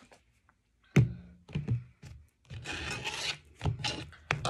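Tarot cards being shuffled by hand, the cards rustling as they slide against one another, with a sharp knock about a second in and another near the end.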